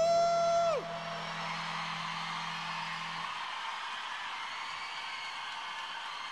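The end of a live rock song: a singer's final 'ooh' rises and is held for under a second, while a low note rings on until about three seconds in. A large concert crowd cheers and applauds through the rest.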